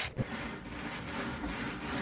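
Roller window blind being pulled and rolled, a steady rubbing rasp lasting nearly two seconds, after a couple of short knocks at the start.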